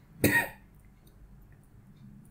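A single short cough about a quarter second in, followed by quiet room tone.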